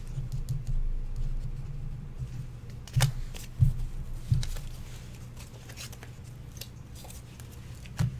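Small desk handling sounds: a pen writing and scratching on paper with light taps and clicks, a few sharper knocks a few seconds in, over a steady low hum.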